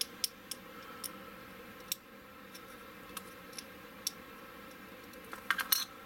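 Light scattered clicks and taps of small plastic model parts being handled and set down on a cutting mat, with a quick cluster of clicks near the end.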